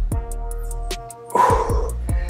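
Background music with a steady beat. About one and a half seconds in, a short, forceful breath from the man exercising.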